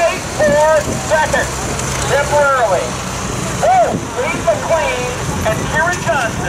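Farm tractor engine running steadily under load as it pulls a weight-transfer sled at a slow walking pace, with a public-address announcer talking over it.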